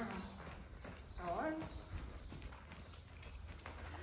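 A horse's hooves beating on the soft sand footing of an indoor riding arena as a chestnut mare trots, a muffled, steady clip-clop.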